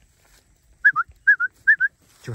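Three quick two-note whistles from a person, each a short clear note followed by a slightly lower one, calling to a Gyr calf and cow.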